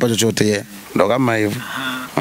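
A man talking, with a long held vowel near the end.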